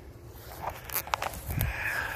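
Footsteps through dry grass and sagebrush: short rustles and crackles of brush against the legs, with a low thud of a step about one and a half seconds in.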